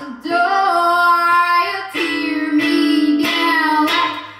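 A woman singing long, held notes in two phrases, accompanied by a strummed ukulele.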